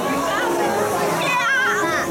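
Voices singing and talking with music from a dark-ride show soundtrack, with long held sung notes and a high, wavering cartoonish voice near the end.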